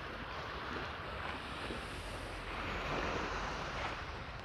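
Steady seaside ambience: small waves washing over a rocky, weedy shore, with some wind.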